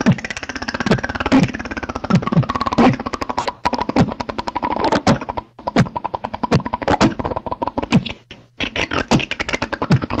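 Beatboxing: a fast, steady run of mouth-made clicks and hi-hat-like strokes over deep bass notes that drop in pitch, with a held tone through the middle.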